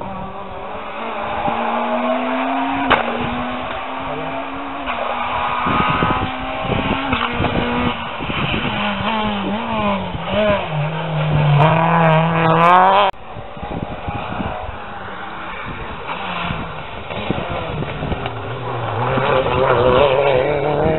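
Rally car engines at full throttle on a special stage, the pitch climbing and dropping with each gear change and lift-off as the cars approach and pass. The sound breaks off abruptly about two-thirds of the way through, then another car's engine rises again near the end.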